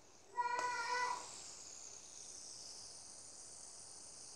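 Fidget spinner whirring with a faint, steady high hiss. About half a second in there is a short, loud pitched call of steady pitch, under a second long.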